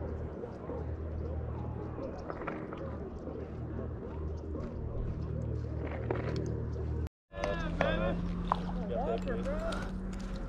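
Faint, indistinct voices of people talking nearby over a low steady rumble of outdoor ambience. A brief dropout about seven seconds in, after which the faint voices go on over a steady low hum.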